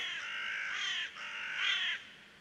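A crow cawing twice: two long, harsh, raspy caws of about a second each, back to back.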